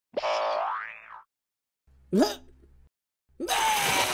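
Cartoon sound effects: a springy boing in the first second, a short upward-sliding tone about two seconds in, then a louder hissing burst with falling tones near the end.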